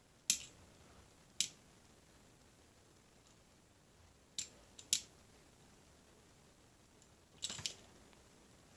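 Light, sharp clicks from a small 1:64 diecast model car being handled and shaken in the fingers while its stiff opening hood is worked free: a few single clicks spread out, then a short quick cluster near the end.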